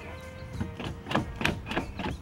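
A run of short plastic clicks and knocks, about six in quick irregular succession, as the rubber gasket around a MINI Cooper's outside door handle is pressed and hooked onto its small retaining clips.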